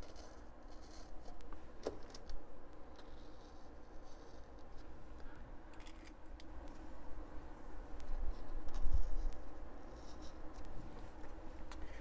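Quiet handling sounds of pins being pushed through a balsa sheet into the building board: scattered faint clicks and light scrapes, with a sharper click about two seconds in and a dull low bump near the nine-second mark.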